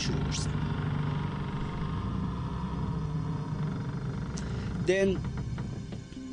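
A steady low rumbling drone, a background sound effect under a spoken horror story, with a short voiced sound about five seconds in.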